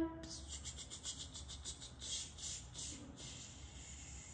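Faint rustling and rubbing as a felt hummingbird cut-out is handled and pressed onto a flannel board, in a run of short soft strokes.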